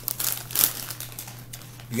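A crinkly plastic packet being handled, with a run of sharp crackles through the first second, loudest about halfway through it.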